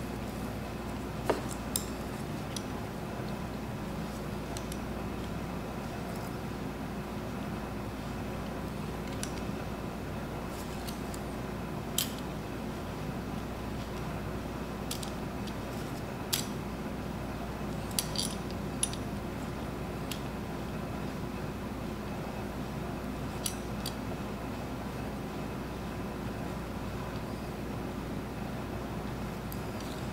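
Scattered sharp metallic clicks and clinks from a hand roller-die tubing bender being worked around a 3/16-inch brake hard line, about a dozen in all, bunched near the start and in the middle, over a steady background hum.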